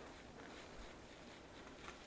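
Near silence: room tone with a low steady hum and a few faint soft rustles.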